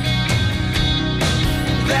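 Live rock band playing an instrumental passage between sung lines: guitars over a steady beat.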